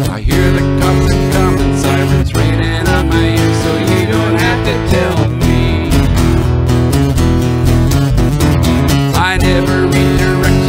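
Acoustic guitar strumming a steady country-folk accompaniment, with an electric bass guitar playing underneath.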